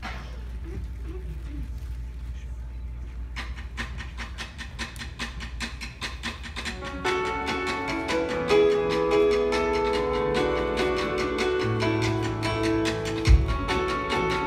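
Live band playing a song's instrumental intro: a quick, even rhythm starts about three seconds in, and sustained chords join it about halfway through, getting louder. A single low thump near the end.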